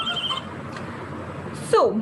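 Cartoon soundtrack voice that cuts off just after the start. Low background hiss follows, then near the end a short vocal sound that slides steeply down in pitch.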